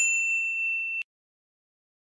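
Notification-bell sound effect from an animated subscribe end screen: one bright ding that rings for about a second and then cuts off suddenly.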